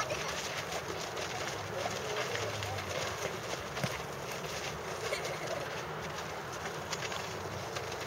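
Distant children's voices over outdoor ambience, with occasional short knocks from soccer balls being kicked and feet on a dirt pitch.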